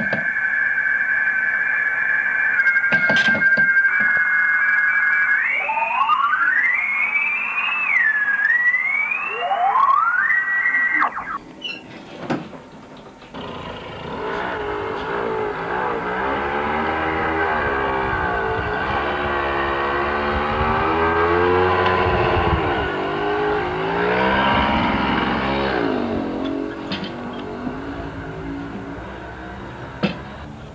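Amateur radio receiver audio. First come steady radioteletype tones that step in pitch a couple of times, then whistles sliding up and down as the receiver is tuned across signals. After a short drop, from about 13 s, a dense warbling tone bends up and down until near the end.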